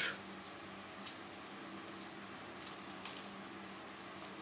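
Faint crumbling and rustling of potting soil and roots as gloved hands tease apart a jade plant's root ball, with a few small crackles, the clearest about three seconds in.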